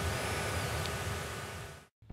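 Steady room-tone hiss that fades out and cuts to silence near the end.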